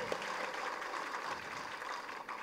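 A pause in a speech: only a faint, steady background hiss of the hall and sound system.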